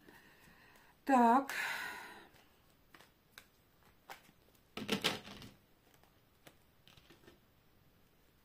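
Tarot cards being handled and drawn from a deck: faint scattered clicks and rustles, with a short louder rustle of cards about five seconds in. A brief vocal sound with a breath about a second in.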